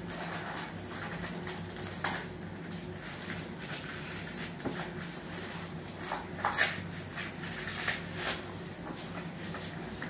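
Tissue paper rustling and crinkling as a gift box is unpacked by hand, in short bursts, the loudest about six and a half seconds in, over a steady low hum.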